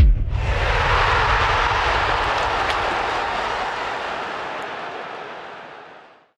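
End of a logo jingle's sound design: a low hit as the music stops, then a long rushing whoosh that slowly fades out over about six seconds.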